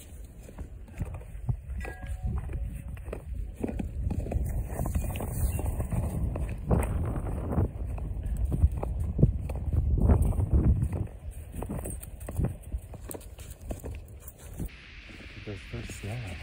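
Footsteps and movement through fresh snow: irregular crunching and rustling, loudest about ten seconds in.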